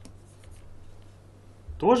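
Stylus writing on a drawing tablet: a few faint, short scratching strokes in the first second, over a steady low hum.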